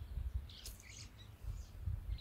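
Birds chirping faintly in a few short, high notes that slide downward, over a low rumble of wind on the microphone.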